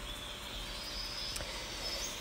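Faint, steady background ambience: an even hiss with a few thin, high insect-like tones and one soft click a little past halfway.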